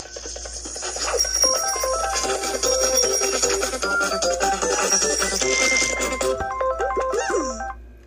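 Bright cartoon music from the show's soundtrack, played through a tablet's speaker: a quick stepping melody of short notes. It ends with a falling swoop and cuts off just before the end.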